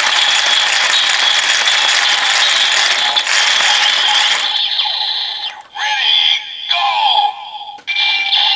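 Kamen Rider Build DX Build Driver toy belt playing its electronic finishing-attack sound effect. A loud steady charging whirr with a high whine runs for about four and a half seconds, then gives way to shorter sweeping electronic tones, with a recorded voice calling "go" near the end.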